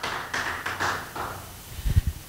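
Soft taps and rustling handling noise on a microphone, with a low thump near the end as it is picked up off the pulpit.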